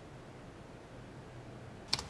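Faint steady room hiss, then near the end a single sharp click: a key tap on a tablet keyboard as typing begins.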